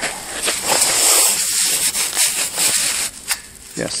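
Rustling and scraping of a gloved hand working under a steel grate among dry pine needles, feeling for a magnetic geocache, with a short click near the end.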